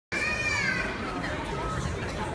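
Children's voices in a large hall: a high child's voice calls out, held for most of the first second and falling slightly, over the chatter of the seated children.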